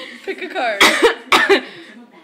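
A person laughing in three or four short, cough-like bursts that fade out near the end.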